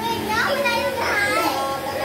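Several young children's high-pitched voices talking and calling out over one another, with no clear words.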